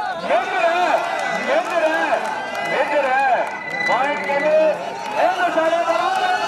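Speech: a man talking loudly and continuously in a high, excited voice, the running commentary of a kabaddi match.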